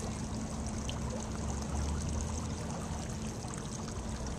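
Wind rushing over the microphone, a steady noise with a low rumble that swells about two seconds in.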